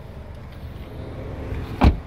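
A car's rear passenger door being shut: one heavy, low thump near the end, over a quiet outdoor rumble.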